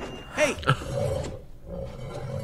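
Animated film trailer audio: a voice says "hey", then a rough, sustained animal growl.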